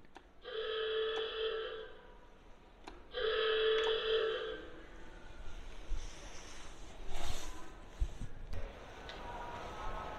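World War II submarine klaxon sounding twice, two harsh 'ah-OOG-ah' blasts about a second apart, the two-blast signal to dive.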